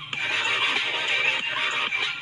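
Intro music with a steady beat.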